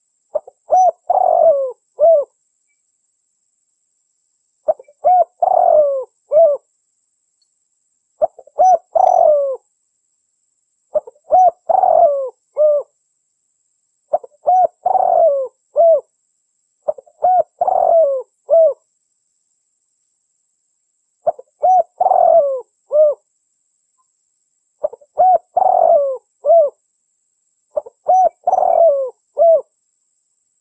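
A dove cooing: the same phrase of a few short coos and one longer, drawn-out coo, repeated about every three seconds, ten times over.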